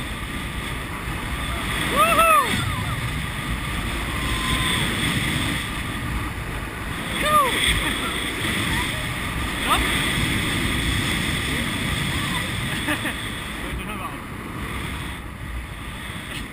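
Loud rushing airflow on the camera microphone as a tandem paraglider flies a fast spiral dive, with a few short rising-and-falling voice exclamations, the loudest about two seconds in and others near seven and ten seconds.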